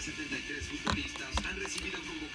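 Faint background music, with a few sharp plastic clicks about a second in and shortly after as the flip-top lid of a plastic water bottle is handled and pressed shut.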